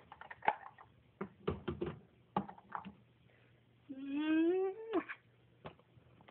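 A few light clicks and knocks of handling, then about four seconds in a single drawn-out animal call, rising in pitch for about a second before it cuts off, from a pet being put back in its cage.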